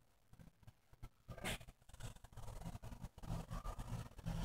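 Mostly quiet, with a single sharp click about a second and a half in, then faint low rumbling and small knocks from a handheld phone camera being moved.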